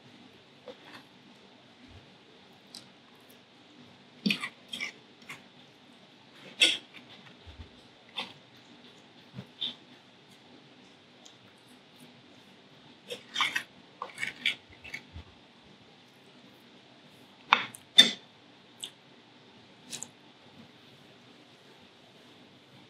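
Metal fork clinking and scraping on a ceramic plate while cake is eaten from it: irregular sharp clicks that come in scattered clusters, with quiet gaps between.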